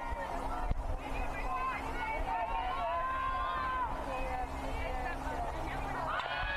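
Distant voices of softball players calling and chattering from the field and dugout. A long drawn-out call comes about three seconds in, and one sharp knock a little under a second in.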